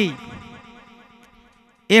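A man's voice through a public-address system: after he stops, its echo repeats and fades away over about a second and a half, and he speaks again near the end.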